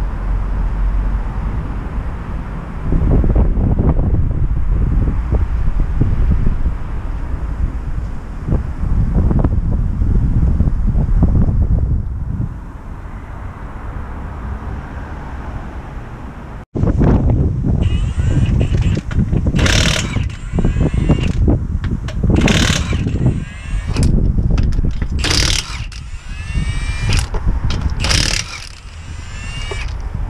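A low, noisy rumble, then from just past halfway a cordless impact wrench on a van's wheel nuts. It runs in about half a dozen short bursts, each with a motor whine that rises and falls, as the nuts are undone to take the road wheel off.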